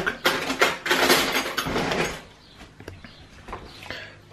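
Cutlery drawer being rummaged for a fork: metal cutlery clattering and rustling for about two seconds, then a few light clicks.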